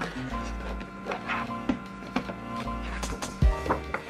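Background music of sustained notes, with a few brief paper rustles and taps from sketchbook pages being turned by hand.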